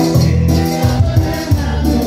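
A live band playing a song with singing voices over a bass line that moves note to note about twice a second.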